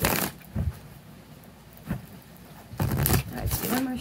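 A deck of oracle cards being shuffled by hand: a short burst of card noise at the start, a couple of light taps, then a longer spell of shuffling near the end.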